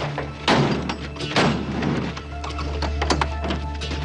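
Two heavy metal thuds about a second apart as the rear swing doors of a Timpte box trailer are pushed shut, followed by lighter knocks, over a steady low music score.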